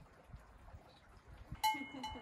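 A goat's collar bell clanks once, sharply, near the end and keeps ringing.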